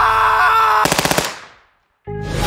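Song intro: a sustained pitched synth tone, then about a second in a rapid burst of sharp cracks like automatic gunfire, fading out into a moment of silence.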